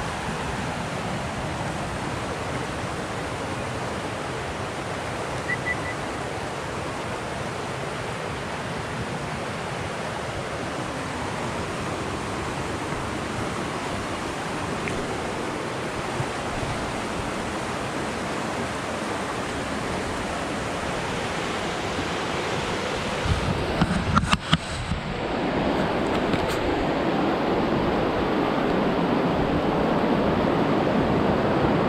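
A steady rush of noise with no clear tones. After a few short knocks near the end it gets louder: water rushing over the rocks of a shallow river's rapids, close to the microphone.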